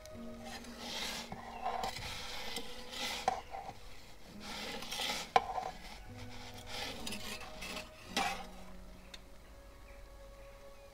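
A perforated metal pizza peel scraping over the stone floor of a pizza oven in several rasping strokes as it slides under the pizza to turn it, with one sharp metal knock about halfway through.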